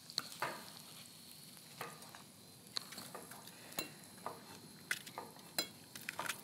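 Kitchen work: a knife tapping and scraping on a wooden cutting board and utensils clinking, a dozen or so short, irregular clicks and knocks over a faint steady hiss.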